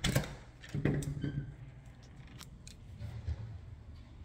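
A front door being unlocked and opened: two sharp clicks from the lock and latch a little past halfway, close together, amid handling noise from the phone being carried.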